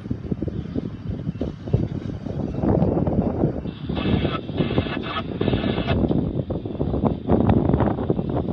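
Wind buffeting the microphone with a gusty low rumble. About halfway in, a railroad crossing warning bell rings in short repeated bursts as the crossing gates lift.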